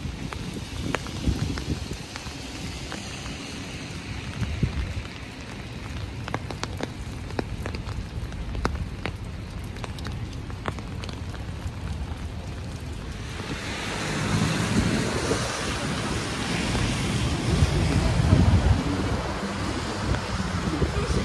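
Steady rain outdoors, with scattered ticks of drops and a low wind rumble on the microphone. About two-thirds of the way in, the rain hiss grows louder and fuller.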